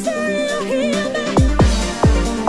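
Electronic club dance track: a held vocal line wavers with vibrato, then about one and a half seconds in a heavy kick drum enters on a steady four-on-the-floor beat.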